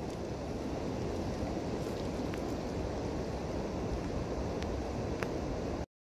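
Steady low outdoor rumble, like wind and water on an open riverbank, with a few faint clicks. It cuts off abruptly near the end.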